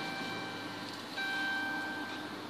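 An electronic warning chime from the Chrysler 300's instrument cluster sounds twice, about a second apart, the second tone louder. Beneath it the car's V6 engine idles with a quiet, steady hum.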